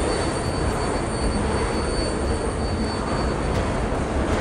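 New York City subway train giving a steady, dense rumble and hiss, with a thin high whine that fades out near the end.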